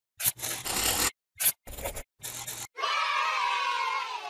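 Sound effects for an animated channel logo: four short scratchy swishes with brief gaps between them, then, a little under three seconds in, a bright held chime-like tone that sinks slightly in pitch.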